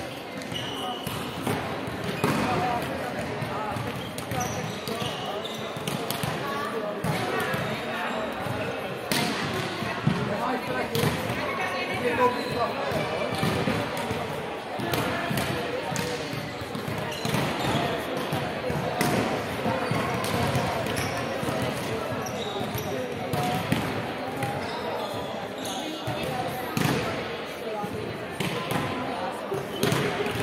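Indistinct voices chattering in a reverberant sports hall, with a volleyball thudding on the wooden floor now and then in sharp knocks.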